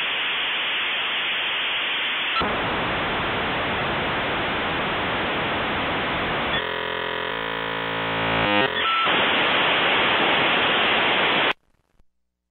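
Loud static hiss, like white noise. A little past halfway it turns into a harsh, buzzing tone for about two seconds, then goes back to static and cuts off suddenly just before the end.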